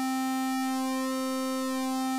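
SkyDust 3D software synthesizer holding one steady square-wave note, pitched around 260 Hz and rich in overtones. Its upper overtones shift slowly as the waveform modifier is moved.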